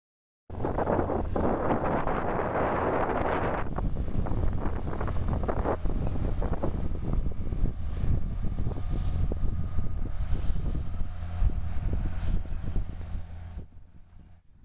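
John Deere tractor's diesel engine running steadily as it pulls a planter across a field, with wind buffeting the microphone, heaviest in the first few seconds. The sound fades out near the end.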